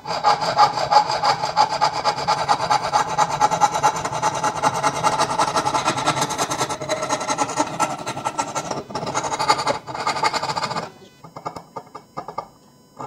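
Hacksaw cutting back and forth through a reddish wooden bar held in a metal vise, in rapid steady strokes, cutting the sides of a row of notches. The sawing pauses briefly twice near the end and stops about a second before the end, leaving a few faint taps.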